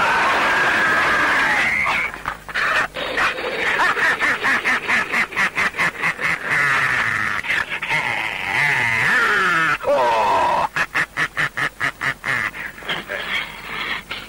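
A high, wavering voice cackling and shrieking, broken into rapid pulses of about four a second in two long runs.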